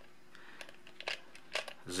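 Faint handling noise with a few small clicks as a mini Phillips screwdriver turns a tiny screw in a plastic multimeter case.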